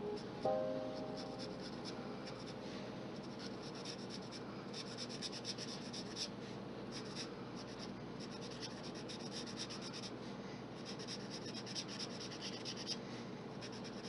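Marker tip scratching back and forth across paper while colouring in, in runs of rapid short strokes with brief pauses between them.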